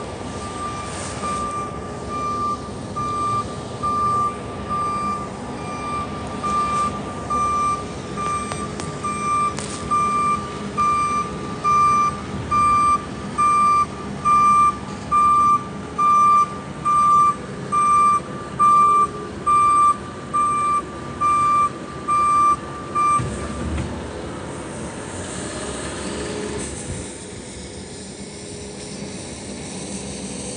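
Backup alarm of a small snow-clearing utility vehicle: a single-pitched beep about once a second. It grows louder toward the middle and stops several seconds before the end, over a steady outdoor hiss.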